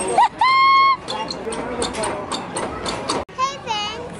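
A young child's high voice: a loud call held for about half a second near the start, then, after a cut, a wavering squeal near the end, with a run of light clicks and knocks in between.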